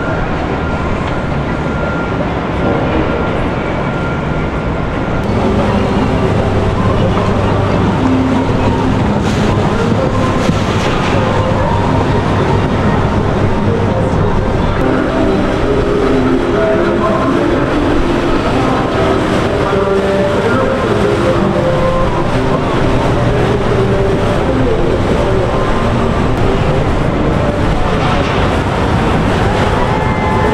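Motorboats passing on a river, a steady mix of outboard engines running and water rushing, with voices chattering over it. The sound shifts about five seconds in and is fuller and louder after that.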